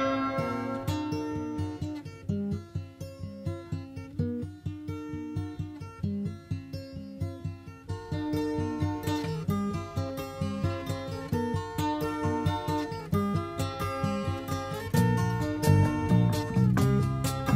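Instrumental music: acoustic guitar picking a steady run of quick notes, sparse and quiet at first. It fills out about halfway through and grows louder with stronger low notes near the end.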